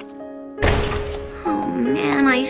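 Soft, sad background music with steady held notes, broken about half a second in by a sudden loud, deep thud, after which the music carries on with a voice coming in near the end.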